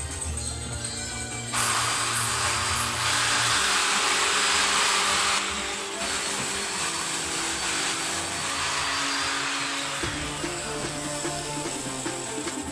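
A handheld electric power tool running on a plywood speaker cabinet: a steady, noisy whir that starts about a second and a half in, is loudest for a couple of seconds, and stops about ten seconds in, under background music.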